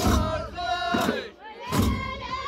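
Ahwash performance: a group of men chanting together in loud, held voices, with their large frame drums struck in unison at the start and again near the end.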